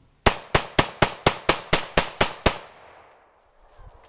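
A firearm fired rapidly, about eleven shots in a little over two seconds, roughly five a second, each a sharp crack with a short echo, then stopping.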